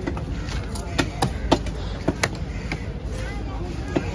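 A knife chopping fish on a cutting block: a string of sharp knocks at uneven intervals, about half a dozen, bunched in the middle, with voices and market bustle behind.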